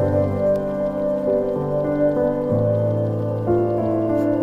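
Instrumental background music: layered, sustained chords whose notes change every second or so.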